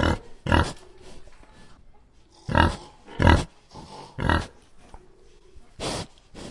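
Young pigs grunting in short, loud bursts, about six grunts spaced unevenly.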